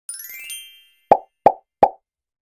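Sound effects: a quick rising chime glissando of bright tones, then three short pops about a third of a second apart, the pops being the loudest part.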